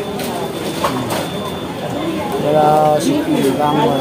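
People's voices talking over a background din of crowd noise, with a few short clicks and knocks in between.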